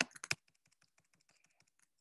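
Computer keyboard keys being pressed: a few distinct clicks right at the start, then a run of faint quick taps.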